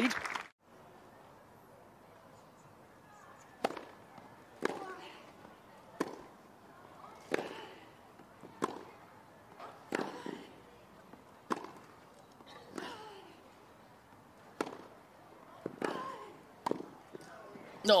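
A tennis ball struck by rackets in a grass-court rally: a serve, then a run of about a dozen sharp hits a little over a second apart.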